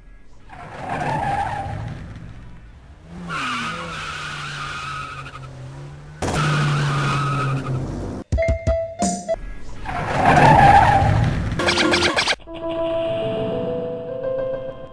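A car engine revving and tyres squealing in several loud stretches, with a few sharp clicks in the middle. Keyboard music comes back in near the end.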